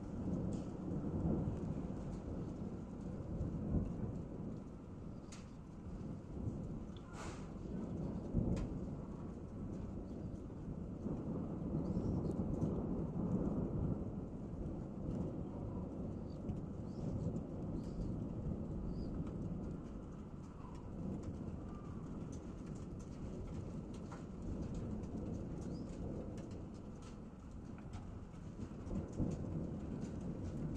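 Thunder rolling in long, low rumbles that swell and die away several times during a thunderstorm, over steady rain.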